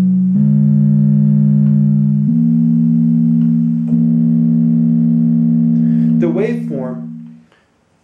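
Hackme Rockit synthesizer's oscillator sounding a run of held low notes, the pitch changing every second or two. It fades out near the end as a man speaks briefly.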